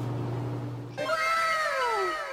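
An edited-in comic sound effect about a second in: a meow-like falling tone, repeated by an echo that fades away over several repeats.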